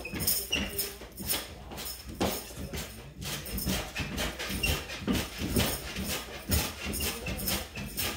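Mini trampoline (rebounder) in use: rhythmic thumps of bouncing, about two a second, each with a jingling rattle.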